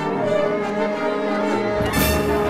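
Orchestral music with bowed strings holding sustained notes, and a brief thump near the end.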